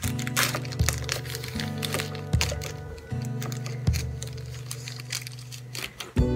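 Background music with a steady bass line, over clear plastic wrapping crinkling and crackling as it is pulled off by hand.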